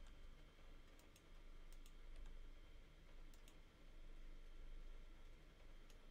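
Faint, scattered clicks of a computer mouse and keyboard in near silence, several coming in quick pairs during the first few seconds, over a low steady room hum.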